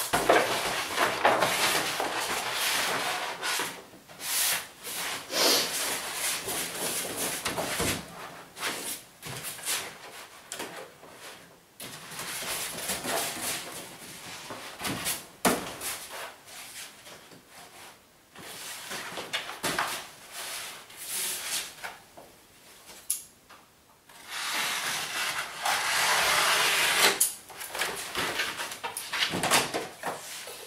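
Roll of wallpaper rustling and crackling as it is unrolled, handled and rolled up on a wooden pasting table, in uneven bursts with short pauses and the odd tap of the roll on the bench.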